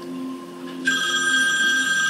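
A phone ringtone, a high trilling ring that starts suddenly about a second in and keeps ringing. It plays from a TV episode on a monitor's speakers.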